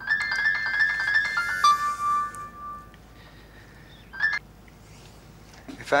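A mobile phone ringtone playing a short melody for about two seconds, then a brief snatch of it again about four seconds in.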